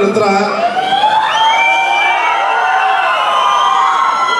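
Large audience cheering and whooping, many high voices rising and falling over one another.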